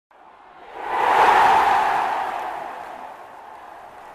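Intro sound effect: a loud rush of noise that swells up about a second in and then fades away slowly.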